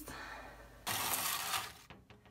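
A spatula scraping across a metal baking sheet as it slides under a cookie, one rough scrape lasting about a second.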